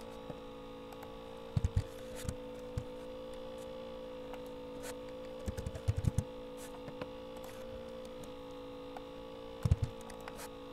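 Steady electrical hum with a constant tone, under short clusters of computer keyboard and mouse clicks: about a second and a half in, again around five and a half to six seconds, and near the end.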